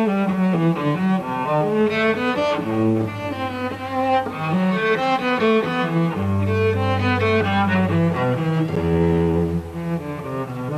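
Cello playing a slow bowed melody over long-held low bass notes.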